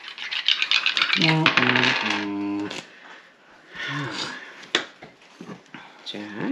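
Dice rattled in cupped hands, a dense run of rapid clicks for about two seconds, then tossed onto a wooden table with a few scattered clicks as they land.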